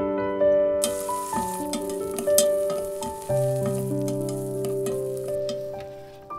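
Mussels sizzling and crackling in hot oil in a steel pot, starting about a second in and dying down near the end. Soft piano music plays throughout.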